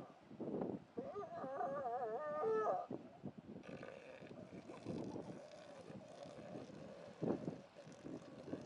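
Northern elephant seals calling: one long, wavering call about a second in, then fainter, lower calls and a short sharper one near the end.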